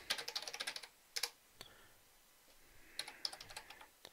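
Typing on a computer keyboard: a quick run of keystrokes, two single key presses, then a second short run of keystrokes about three seconds in.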